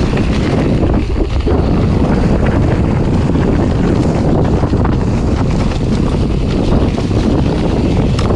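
Maxxis mountain-bike tyres rolling fast down a leaf-covered dirt singletrack: a loud, steady rumble of tread on ground with scattered small ticks, mixed with wind rushing over the microphone.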